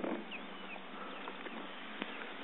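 Faint outdoor background: a soft, steady hiss with a few brief, faint high chirps scattered through it.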